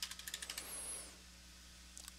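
Computer keyboard keys tapped as digits are typed: a quick run of faint clicks in the first half second.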